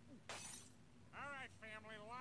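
Faint cartoon dialogue: a short hiss of noise, then a high-pitched voice speaking from about a second in.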